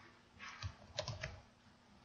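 Faint typing on a computer keyboard: a short run of about five keystrokes.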